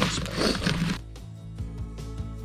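A rock hammer scraping and knocking in dirt and rock, cut off about a second in by background music with held tones and regularly spaced plucked notes.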